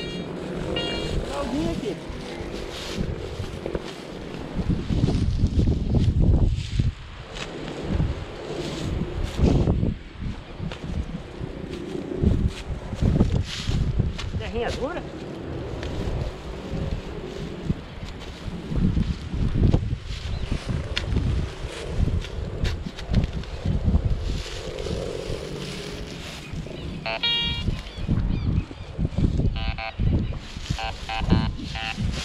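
A handheld metal detector hunting in grassy soil: rustling, scraping and knocks of digging at a target, over a gusty low rumble on the microphone. Near the end the detector gives short repeated beeps as its coil passes over the dug hole.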